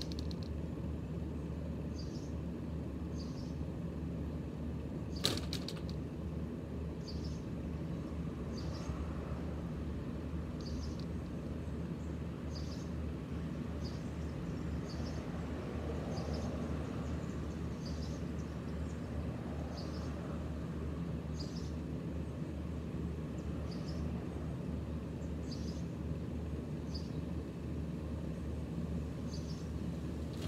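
Outdoor ambience with a steady low rumble of traffic, and a bird chirping short high notes about once a second. A single sharp click comes about five seconds in.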